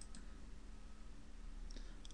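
Faint computer mouse clicks, selecting a menu item, over low room hiss.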